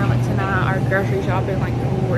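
A woman talking, over a steady low hum.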